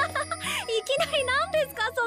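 A girl's high-pitched voice from an anime soundtrack in quick, squealing rises and falls of pitch, over light background music with steady held bass notes.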